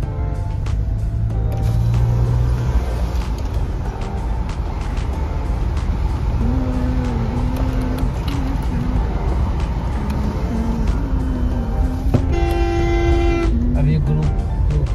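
Steady road and engine rumble heard from inside a moving car in city traffic, under background music. A vehicle horn sounds once, for about a second, near the end.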